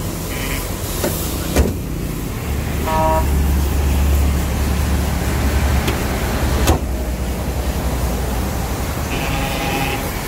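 A motor vehicle running, with a deep rumble that swells for a few seconds in the middle and then eases off. A short pitched tone and a couple of sharp clicks sound over it.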